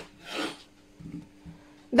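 Kitchen knife slicing through a pear on a wooden cutting board: one short rasping cut in the first half second, then a few faint light taps of the blade on the board.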